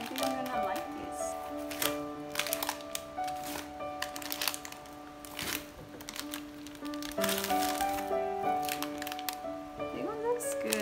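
Background music with held notes, over the crinkling and rustling of plastic ice cream wrappers being picked up and packed into an insulated foil bag.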